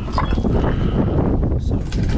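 Wind buffeting the microphone in a loud low rumble, with a few scattered knocks.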